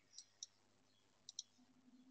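Near silence with four faint clicks from a computer's controls: two about a quarter second apart near the start, then a quick pair about a second and a quarter in.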